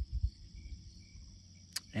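A steady, high insect chorus rings on a late-summer lawn, with a brief low rumble of wind or handling on the phone's microphone just after the start. A small mouth click comes near the end as the speaker draws breath to talk again.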